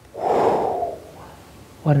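A man's loud breathy exhale, a sigh of relief, lasting under a second, with the start of a spoken word near the end.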